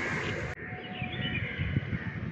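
Faint outdoor ambience with a few faint bird chirps.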